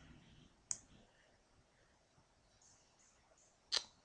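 Computer mouse clicks: a sharp click under a second in and a louder one near the end, with a few faint ticks between, over quiet room tone.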